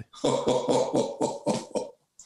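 A man laughing heartily: a run of about nine quick bursts of laughter, roughly five a second, lasting nearly two seconds.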